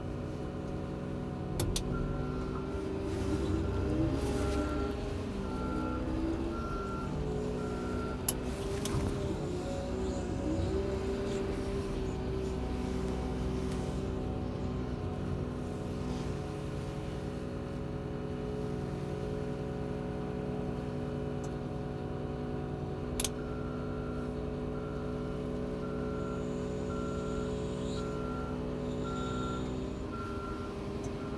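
Cat K-series small wheel loader's diesel engine running steadily, rising and falling in pitch as the machine is worked in hydrostatic drive. Its reversing alarm beeps about once a second twice: early on for several seconds, and again through the last several seconds. A few sharp clicks are heard.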